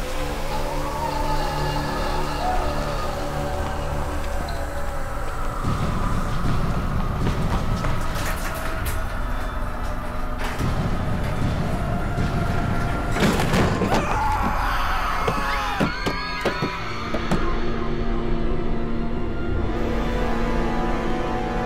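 Tense horror film score with dense sound effects layered over it, loud throughout, with a big swell about thirteen seconds in and wavering, sliding tones a few seconds later.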